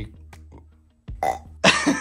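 A boy burping loudly, the burp starting about one and a half seconds in after a near-quiet pause.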